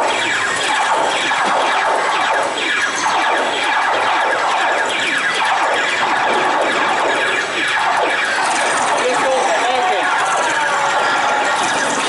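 A dense, steady mix of many voices with music behind them, with shrill sliding cries standing out in the second half.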